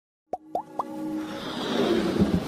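Animated logo intro sound effects: three quick rising pops in a row, then a swelling whoosh that builds up.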